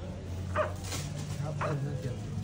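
A dog barking faintly twice, about half a second and a second and a half in, over a low steady hum.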